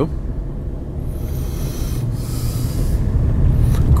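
Steady low rumble of a car's engine and tyres heard from inside the cabin while driving slowly, with a faint hiss rising in the middle.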